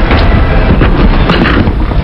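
Loud arena background noise, a steady rumbling roar, with a few short knocks, the last of them about one and a half seconds in.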